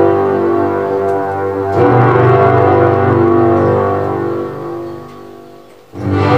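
Electronic keyboard playing slow, held chords. The chord changes about two seconds in, and the sound fades away near the end.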